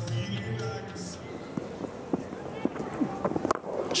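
Cricket ground sound between calls of the commentary: a held low musical tone in the first second, scattered light knocks, then the sharp crack of a cricket bat striking the ball just before the end.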